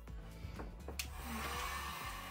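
A handheld hot-air blower (craft heat gun or hair dryer) is switched on with a click about a second in, then runs with a steady rushing whoosh. It is drying freshly brushed-on white chalk paint.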